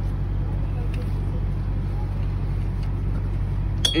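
Steady low engine hum of an idling diesel truck, even and unchanging throughout.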